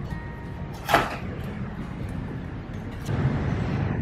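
A cardboard product box being opened by hand, with one sharp snap of the box about a second in and softer handling noise later, over faint background music.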